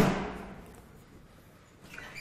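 A single sharp clunk with a short ringing tail: the foot-operated caster brake of a meal-distribution trolley being released.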